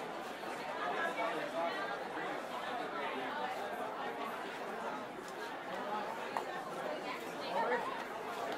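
Indistinct chatter of several people talking at once, a continuous babble of overlapping voices.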